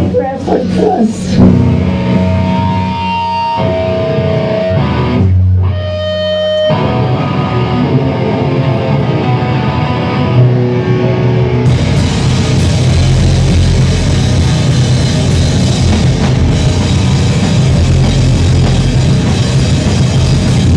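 Live rock band: electric guitar holding ringing, sustained notes, then the full band with drums and cymbals comes in loud about twelve seconds in.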